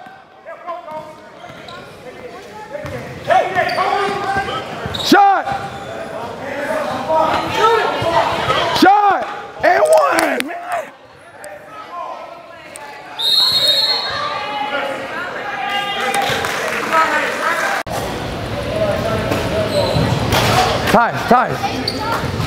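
Basketball game play on a hardwood gym court: the ball bouncing, sneakers squeaking in short rising-and-falling chirps, and voices calling out, all echoing in the large hall. It goes quieter for a couple of seconds about halfway through.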